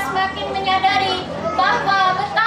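A girl speaking steadily in Indonesian, delivering a short speech.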